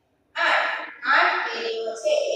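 Speech only: a woman teacher talking, starting a moment after a brief pause.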